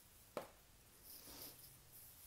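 Near silence: room tone, with a single soft click about half a second in.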